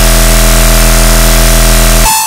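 Dubstep bass synth holding one loud, low note steadily, cutting off abruptly at the very end.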